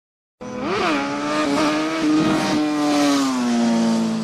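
Logo sound effect: a loud, pitched hum with many overtones that starts abruptly, swoops up in pitch about a second in, then holds and slowly sinks until it cuts off.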